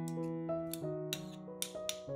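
Soft background music with gently changing keyboard notes. Over it come several short metallic clicks and scrapes as a steel spoon scrapes crushed garlic off a metal garlic press.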